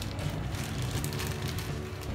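Background music, with the crinkling of a plastic bag as it is squeezed and worked open by hand.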